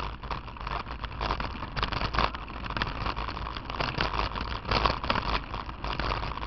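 Handlebar-mounted action camera rattling and knocking without a break as the bicycle rolls over a stony gravel dirt track, the tyres and frame vibration giving dense irregular clatter over a steady deep rumble.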